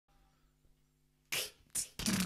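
Two sharp, breathy hiss bursts from a mouth cupped over the microphone, starting a little over a second in: the first beatboxed snare hits of the song's intro beat. Before them only a faint low hum.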